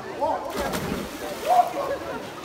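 Voices talking and calling, with water sloshing and a short splash about half a second in as a swimmer surfaces and starts swimming in the pool.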